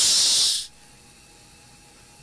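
A man's drawn-out "s" hiss into a close microphone, the held end of a spoken word, lasting about half a second. After it comes faint steady room tone.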